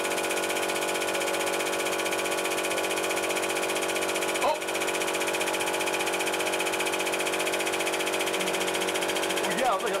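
Hydraulic press's pump running with a steady hum while the ram squeezes a wet sponge flat, briefly dipping about four and a half seconds in. A voice says "okay" at the very end.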